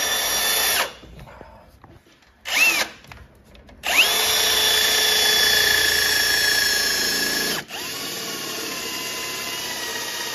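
Milwaukee M18 cordless drill drilling a hole through the car's painted inner wing panel for a rivnut. A short burst at the start and a brief spin-up and spin-down are followed by a long steady run from about four seconds in. Near eight seconds in, the motor's whine drops in pitch and level and carries on.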